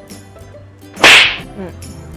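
A single short, sharp swishing noise about a second in, the loudest sound here, over faint background music.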